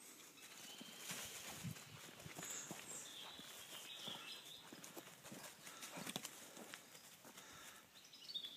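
Faint rustling and crunching of dry fallen leaves under running feet, with many small irregular crackles and footfalls.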